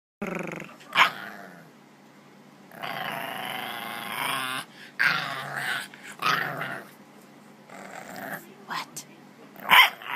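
English bulldog puppy vocalizing insistently at its owner: a string of pitched, drawn-out calls, the longest about two seconds, broken by short sharp barks about a second in and near the end. It is the puppy demanding attention.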